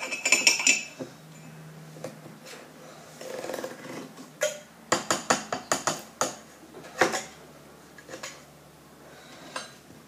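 Metal spoon clinking against a mug and a chocolate powder tin as powder is scooped and tipped in: a cluster of clinks at the start, a quick run of about six clinks around the middle, and one more shortly after.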